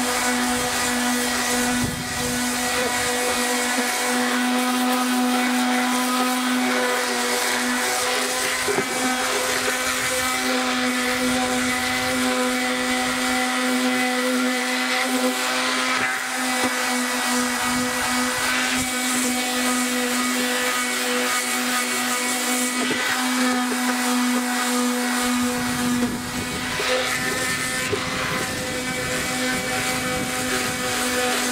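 Corded electric palm sander running steadily with a constant motor hum as its pad scrubs across the hood of a 15 hp Johnson outboard. A little before the end the scrubbing grows coarser and lower as the pressure or stroke changes.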